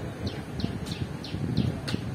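A bird calling in a quick series of short, high, falling notes, about three a second, over a low background rumble.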